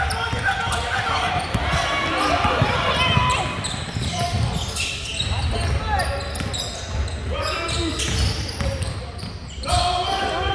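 A basketball dribbled on a hardwood gym floor, with repeated bounces and scattered voices from players and spectators, echoing in a large gym.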